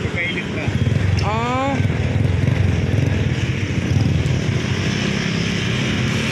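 Kawasaki Rouser's electric starter motor whirring without turning the engine over: the Bendix drive's spring has sunk, so the starter spins without engaging the flywheel. A brief rising tone, like a voice, comes about a second in.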